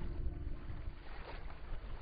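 Wind rumbling on an outdoor microphone: an uneven low noise.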